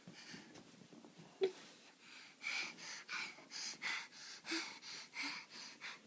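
Heavy, rhythmic breathing close to the microphone: a run of breathy puffs, about two a second, starting about two seconds in. There is a short vocal sound about a second and a half in.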